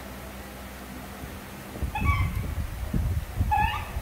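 Young pet macaque monkey giving short high squeaks, one cluster about two seconds in and another near the end. From about two seconds in, low rumbling noise runs underneath.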